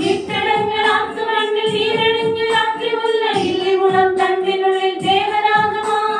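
A group of women singing a Christmas carol together in long held notes, with a steady beat underneath.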